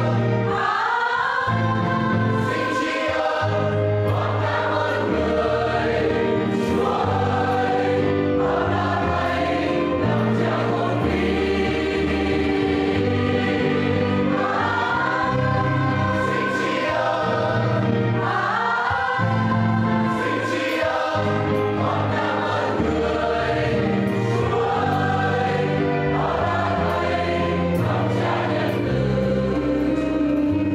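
A church choir singing a hymn over sustained accompanying bass notes that change every second or two.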